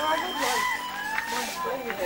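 Women's voices calling out excitedly in greeting, rising and falling in pitch, with no clear words.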